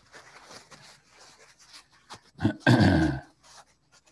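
Faint rubbing of a tissue over pastel on paper, blending in the base coat. About two and a half seconds in comes a man's short, loud grunt-like throat sound, falling in pitch.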